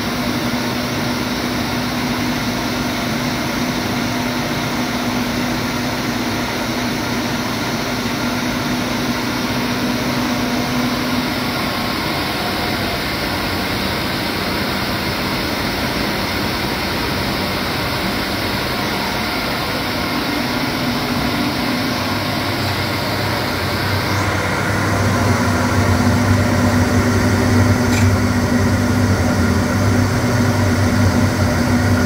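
Seydelmann K120 AC8 bowl cutter running empty, its bowl turning and knife shaft spinning: a steady mechanical whirr with a hum. About 24 seconds in it grows louder and deeper.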